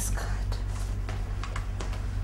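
Papers and money in a briefcase rustling as they are handled, in a run of short rustles, over a low steady hum.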